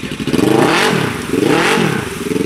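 Polaris RZR 1000's parallel-twin engine revved twice, the pitch climbing and falling each time, as its 32-inch mud tires spin in deep pond mud, throwing mud and water: the machine is stuck.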